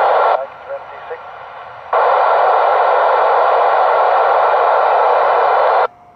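Band-limited static from an Icom ID-4100 transceiver's speaker as it receives the TEVEL-5 satellite downlink with no clear voice: a short loud burst, a quieter stretch, then steady loud noise from about two seconds in that cuts off suddenly just before the end.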